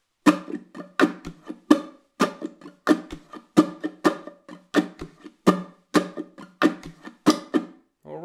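Tenor ukulele played with an eight-stroke rumba flamenco strum, about three strokes a second, with some strokes accented harder than the rest and stroke 8 left out every other time through the pattern. A few low knocks sound under some of the strokes.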